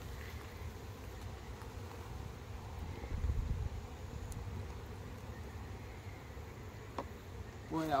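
Honeybees buzzing around an open hive super while a metal hive tool works at the frames. There is a single sharp click about seven seconds in.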